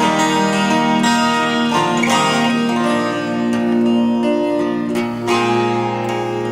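Acoustic guitar playing an instrumental passage of a song, plucked notes ringing on over one another.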